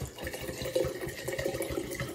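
80-proof alcohol pouring from a glass bottle into a glass mason jar of cut vanilla beans, a steady uneven stream of liquid filling the jar.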